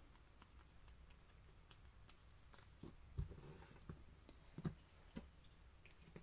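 Near silence: a few faint, soft taps and rustles of a small paper strip being handled and set down on a cutting mat.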